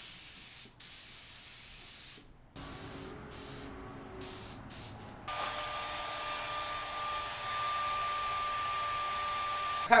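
Air spray gun hissing in short spurts as the trigger is pulled and released, laying light coats of adhesion promoter on leather. About five seconds in, a hair dryer starts running steadily with a steady whine to dry the coat.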